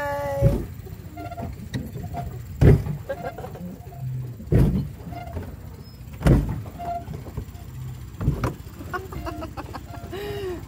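Low wind rumble on the microphone aboard a pedal boat, with a dull knock roughly every two seconds; faint voices far off.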